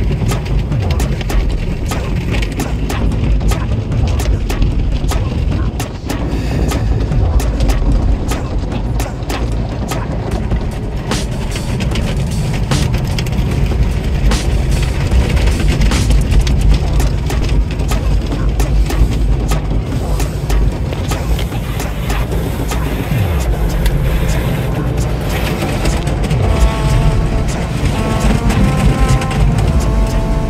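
Automatic car wash heard from inside the car: water and foam spraying hard against the windshield and body, a heavy low rumble with dense spattering hits throughout. Near the end the wash's cloth strips sweep over the windshield. Music plays along with it.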